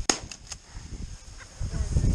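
A shotgun shot fired at a flushed game bird, one sharp report just after the start, followed closely by two fainter cracks. Wind rumbles on the microphone near the end.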